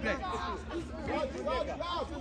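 Several voices shouting and calling out to each other across a football pitch during play, overlapping with one another.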